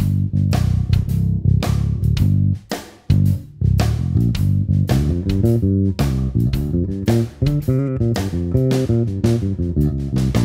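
Human Base Roxy B5 five-string electric bass played fingerstyle with its electronics in active parallel mode: a line of plucked notes, with a brief break about three seconds in and quicker runs of notes in the second half.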